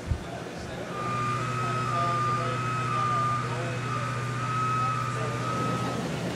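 A machine or vehicle starts running about a second in: a low steady hum with a high steady tone above it, over background chatter.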